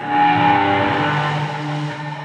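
Distorted electric guitar chord struck through the amplifier, left ringing as a steady drone.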